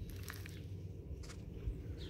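Quiet outdoor background with a low steady rumble and a few faint soft rustles from fingers working soil in a planting hole.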